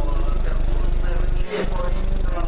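Rally car engine running hard, its pitch shifting, with a brief drop about one and a half seconds in before it picks up again.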